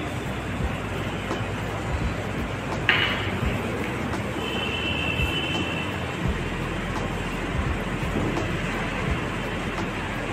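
Steady background rumble and hiss, over the soft sounds of hands folding chopped walnuts into brownie batter in a steel bowl. A brief sharp sound comes about three seconds in, and a short high tone near the middle.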